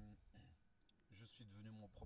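A man speaking quietly in short phrases, with a pause and a few faint mouth clicks about halfway through.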